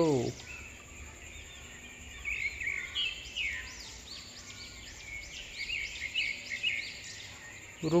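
Small birds chirping, with many short quick calls that come thicker from about two seconds in.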